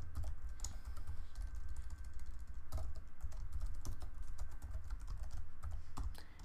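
Typing on a computer keyboard: irregular keystrokes in short runs, over a low steady hum.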